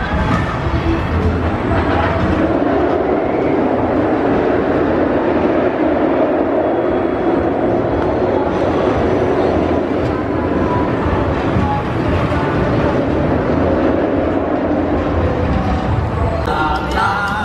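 A steel roller coaster train running along its track: a steady, loud rumble.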